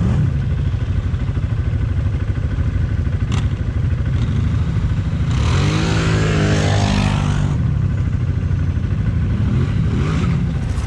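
Quad bike engine idling steadily close by, while another quad drives past at about five and a half seconds in, its engine note louder and falling in pitch as it goes by over about two seconds.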